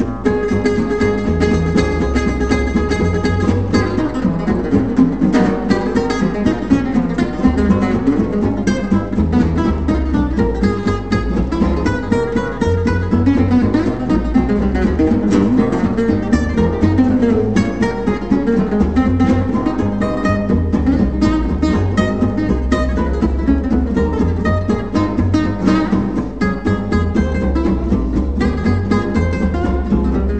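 Gypsy jazz (jazz manouche) played on acoustic guitars: a lead guitar picks fast lines over rhythm-guitar chords and a double bass.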